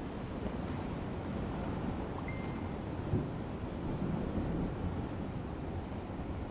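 Wind on the microphone, a steady low rumble, with a short high tone about two seconds in and a soft thump about three seconds in.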